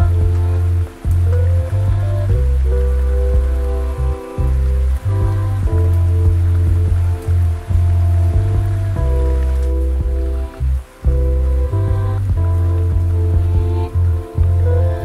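Chill lofi hip hop music: a heavy sustained bass line under mellow held keyboard chords, with brief dips in the bass a few times. A layer of rain sound runs underneath the music.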